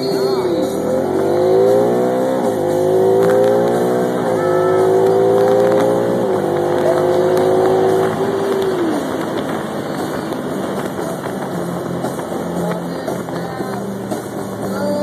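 Car engine accelerating through the gears. Its pitch climbs and drops back at each of three upshifts, holds briefly, then falls away about nine seconds in as the throttle eases, leaving steady road and tyre noise.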